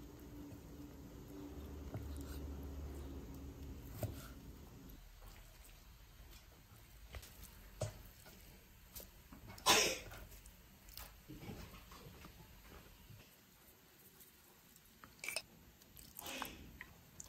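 Faint, scattered knocks and taps of a kitchen knife and raw beef being handled on a wooden chopping block. The loudest is a short scrape about ten seconds in. A low steady hum runs under the first five seconds.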